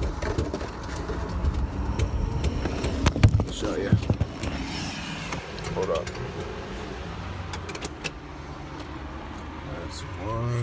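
Knocks, clicks and rustling as a phone camera is handled and cardboard McNuggets boxes are moved about, over a low steady hum in the car cabin.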